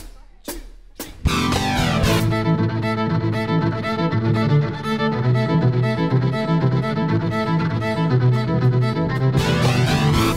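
Three sharp clicks about half a second apart, then a live folk-rock band comes in together about a second in. A fiddle plays the lead over strummed acoustic guitar, bass guitar and drums with a steady beat, and there is no singing yet.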